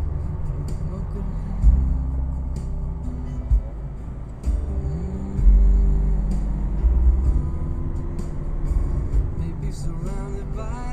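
Car driving uphill, heard from inside the cabin: a steady low engine and road rumble that swells louder a few times, with music playing over it.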